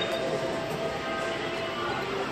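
Electronic game music from a video slot machine, a note held steady throughout, over the dense background noise of a casino floor.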